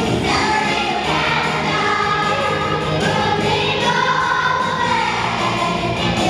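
An elementary school children's choir singing a song, with long held notes.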